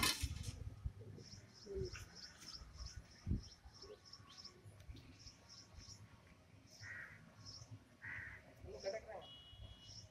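Faint outdoor birdsong: a small bird chirping repeatedly, a few high chirps a second, with two crow caws near the end. A sharp click sounds at the very start.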